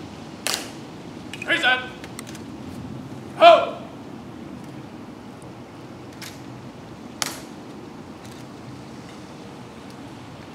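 Honor guard soldiers' drawn-out shouted drill commands, one about a second and a half in and a louder one at about three and a half seconds, with sharp clicks from their rifle drill just before the first command and again about seven seconds in.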